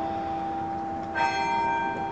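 Bells ringing in a slow sequence: a new bell is struck about a second in, and its tones ring on over the fading earlier ones.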